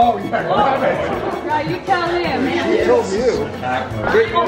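Indistinct chatter of several voices talking over one another.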